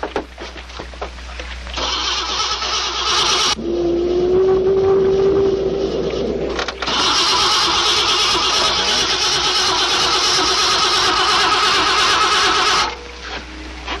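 A motorboat's engine being cranked in repeated start attempts without catching, in three stretches, the last and loudest stopping suddenly about thirteen seconds in. A clogged fuel line is blamed for the failure to start.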